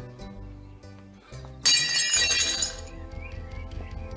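Dishes crashing and breaking about a second and a half in, with clinking, ringing shards for about a second afterwards, over background music.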